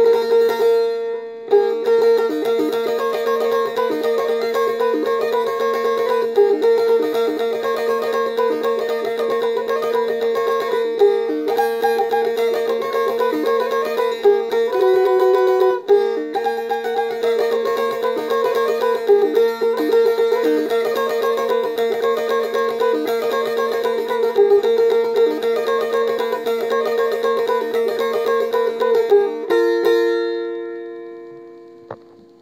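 Çifteli, the Albanian two-stringed long-necked lute, played solo: a quick, rapidly picked melody on one string over a steady drone on the other. About halfway through the notes change briefly, and just before the end a new low note comes in as the tune closes.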